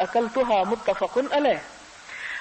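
Only speech: a woman speaking in Urdu, pausing briefly near the end.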